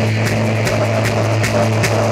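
Rock band playing loud, a held low bass note under regular drum and cymbal hits about two or three a second.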